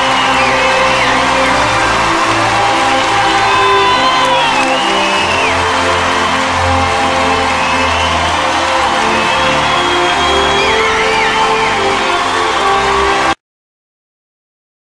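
Swelling show music with held chords over a large theatre audience applauding, cheering and whooping in a standing ovation. Everything cuts off suddenly near the end.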